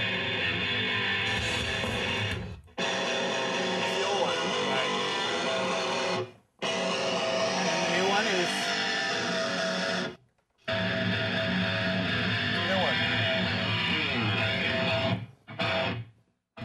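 Distorted electric guitar recording played back through a guitar amplifier and re-miked (reamping), sustained chord phrases cut by short gaps every few seconds.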